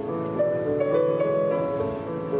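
Solo playing on a 1915 Steinway & Sons concert grand piano: a slow passage of held notes in the middle register, each new note sounding over the ringing of the last.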